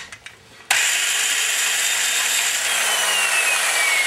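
Valve seat grinder driving a 45-degree stone against a cast-iron valve seat, switched on about a second in and running steadily with a gritty grinding hiss. A thin whine falls in pitch in the second half as the stone is pressed lightly to widen and even up the seat.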